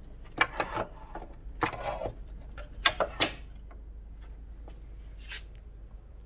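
Vintage metal bench planes with wooden handles being handled and shifted on a wooden shelf: three short clusters of knocks and clatter in the first three seconds, then only faint rustling.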